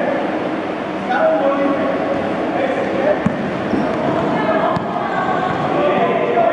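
A basketball bouncing on an indoor court with a few sharp knocks, over a steady background of kids' voices talking.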